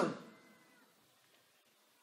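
A man's voice trailing off with a short echo in the first half-second, then near silence.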